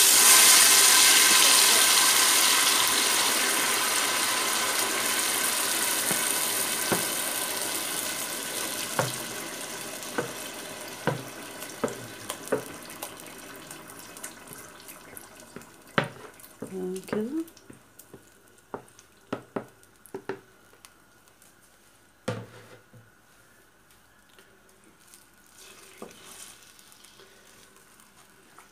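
Minced fresh red chili peppers tipped into hot oil in a stainless steel pot, sizzling loudly at first and fading steadily over about twenty seconds as the wet peppers cool the oil. Scattered knocks and scrapes follow as the rest is scraped from the bowl and stirred.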